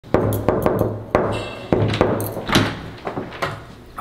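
Knuckles knocking on a door, a series of sharp raps spread over the first two and a half seconds, with music underneath.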